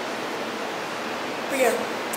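A steady, even hiss of background noise with nothing standing out of it; a woman's voice begins near the end.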